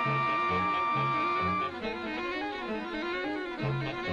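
Orchestral background music: a long held high note over a steady pulsing bass line. The held note ends about a second and a half in; the bass pauses in the middle and comes back near the end.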